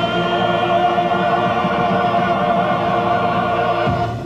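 A solo male voice and a uniformed male choir with accompaniment hold one long final chord, the top note wavering with vibrato. It cuts off near the end, closing the song.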